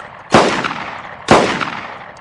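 Browning Auto-5 long-recoil semi-automatic shotgun fired twice, about a second apart. Each shot trails off over most of a second.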